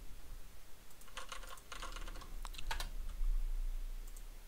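Computer keyboard being typed on: a quick run of key clicks from about a second in until nearly three seconds in.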